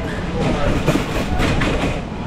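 Metal shopping cart rolling over a concrete store floor, its wheels and wire basket rattling steadily, with voices in the background.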